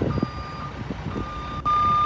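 Truck reversing alarm beeping: a steady high tone about half a second long, repeating roughly once a second, with the third beep near the end louder than the first two.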